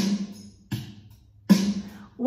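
Rhythm sticks struck on a tabletop three times, about three-quarters of a second apart, each a sharp knock with a short ringing decay.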